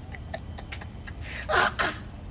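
A man laughing in two short breathy bursts about one and a half seconds in, over a steady low outdoor rumble.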